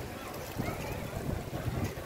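Outdoor ambience dominated by wind buffeting the microphone as a low, uneven rumble, with faint voices of people passing.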